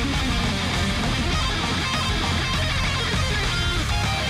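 Heavy metal song playing: electric guitars over drums and bass.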